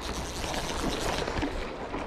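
Steady rushing noise of the river current, with a jacket sleeve rubbing and brushing against the camera microphone.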